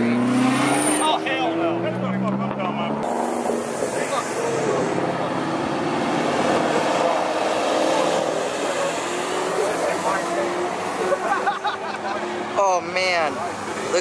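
Performance cars driving past one after another, engines revving and rising in pitch as they pull away, among them a Lamborghini Murciélago's V12 going by near the middle.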